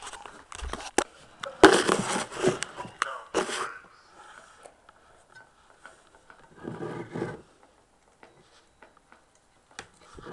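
Handling noise as the camera is moved and a speaker wire and connector are fiddled with: a couple of sharp clicks about a second in, then about two seconds of scraping and rustling. A short laugh comes around seven seconds in. The subwoofer is not playing.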